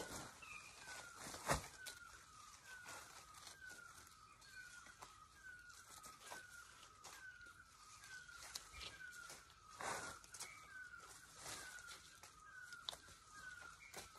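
A faint bird call, one short dipping note repeated evenly about three times every two seconds, with a few sharp snaps and rustles of jungle plants being handled and cut, the loudest snap about a second and a half in.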